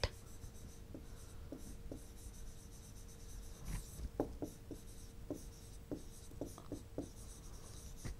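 A stylus writing on an interactive display screen: faint scattered taps and short scratches, sparse at first and coming thicker from about halfway, over a faint steady hum.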